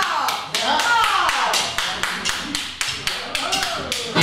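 A steady tapped beat of sharp, evenly spaced ticks, about four a second, counting time before a song starts. A man talks over it.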